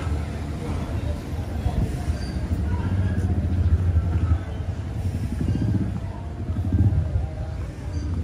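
Street ambience dominated by a steady low rumble of motor traffic, which grows a little denser and louder between about five and seven seconds in.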